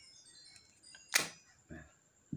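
A single sharp plastic click about a second in as the folding arm of an L08 phone gimbal stabilizer is swung open and snaps into place.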